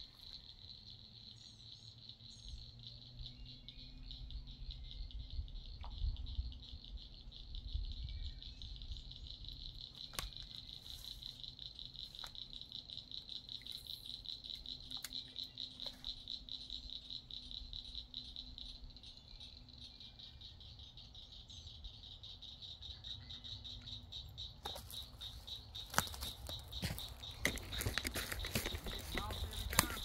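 Insects trilling steadily in a high, fast-pulsing chorus, with a low rumble underneath. Several sharp clicks and a burst of rattling come in the last few seconds.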